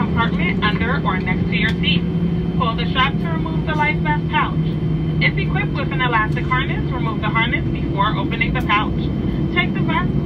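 Steady low drone inside the cabin of an Airbus A320 taxiing with its jet engines at idle, under a voice speaking throughout over the cabin speakers.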